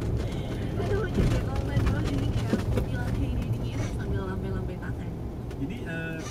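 Steady low engine and road rumble heard from inside a car's cabin at slow speed, with indistinct voices over it.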